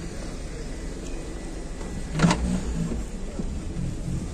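A sedan's trunk latch clicks once about two seconds in as the trunk lid is released and lifted, over a steady low rumble of handling and outdoor noise.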